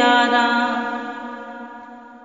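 Unaccompanied naat singing: one voice holds the final note of a line at a steady pitch, fading away over about two seconds.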